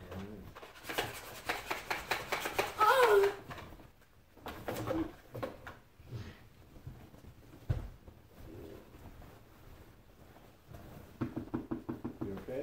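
Wrapping paper rustling and tearing as presents are unwrapped, loudest in a dense crackly burst from about one to three and a half seconds in, with a short wavering pitched sound near its end. A single low thump comes near eight seconds, and the paper crackle picks up again near the end.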